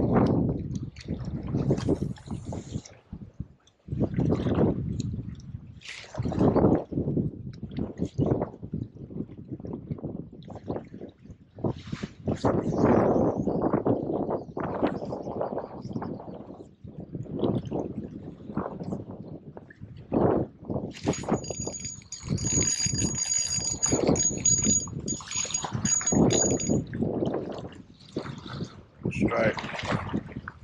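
Water sloshing and gurgling against the rocky bank of a fast, muddy river, in uneven surges. Near the end a thin high-pitched whine, broken by short gaps, runs for about six seconds.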